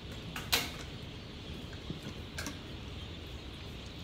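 A metal spoon clinking and tapping against a bowl in a few short, light clicks, the sharpest about half a second in, over a low steady background hum.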